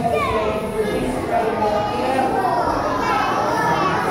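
A crowd of young children talking and calling out at once, many voices overlapping without a break.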